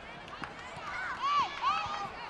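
Women footballers shouting to each other during play: short, high-pitched calls, the two loudest coming a little after a second in.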